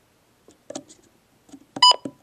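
Midland WR-100 weather radio's keypad: a few soft button clicks, then one short electronic key beep near the end as a button is pressed.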